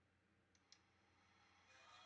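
Near silence: faint room tone with two small clicks a little after half a second in.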